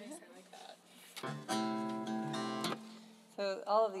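A single chord strummed on a steel-string acoustic guitar about a second in. It rings for about a second and a half, then is cut off abruptly.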